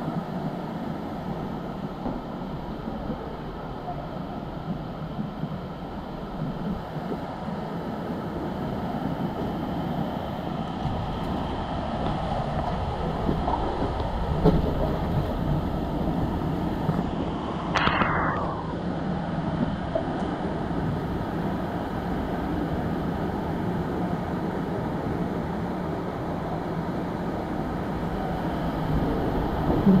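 Steady rushing of water flowing down a plastic water-slide tube, heard from the rider's seat at the slide's mouth, growing a little louder near the end as the slide begins. A brief higher-pitched sound about two-thirds of the way through.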